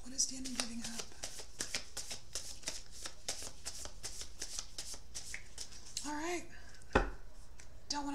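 A deck of tarot cards being shuffled in the hands, a quick run of soft card clicks for about six seconds. A single sharp knock follows about a second later.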